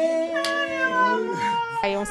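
Baby making long, drawn-out, high-pitched vocal sounds. A higher squeal comes in about half a second in and slides down in pitch.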